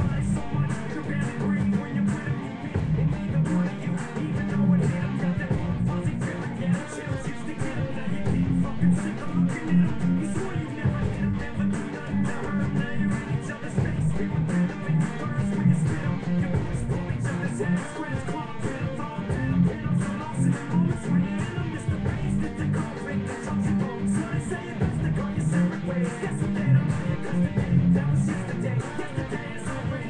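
Guitar strummed in a steady, continuous rhythm through a chord progression, with no vocals.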